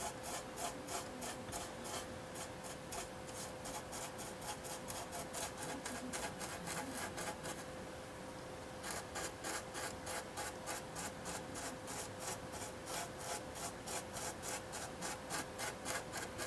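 Stiff-bristled brush scrubbing rapidly back and forth over a painted model's surface, about four strokes a second, rubbing off dried panel-line wash. The scrubbing pauses briefly about eight seconds in, under a faint steady hum.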